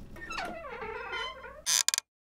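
Cartoon sound effects: a wavering, brass-like tone that bends up and down in pitch, then two sharp hits like footsteps near the end.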